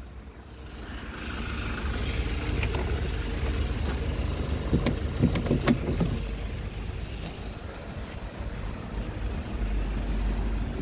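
A light truck's engine running close by, a steady low rumble that grows louder about a second in and eases off later; a few sharp clicks sound around the middle.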